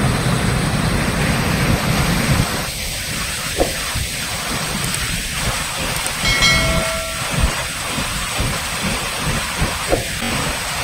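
Floodwater pouring in a torrent into a deep open well, a loud, steady rush of falling water with a low rumble beneath. About six seconds in a short high tone sounds briefly over it.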